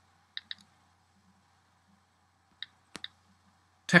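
iPhone on-screen keyboard key clicks as a word is typed letter by letter. There are two quick clicks about half a second in, then a little run of clicks between two and a half and three seconds in, one of them sharper than the rest.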